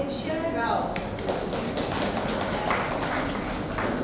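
A woman's voice at the start, then about three seconds of dense, irregular tapping noise with a few sharper knocks.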